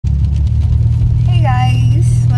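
Steady low rumble of a car heard from inside the cabin, the engine running while the car sits still. A woman's voice comes in over it in the last half second.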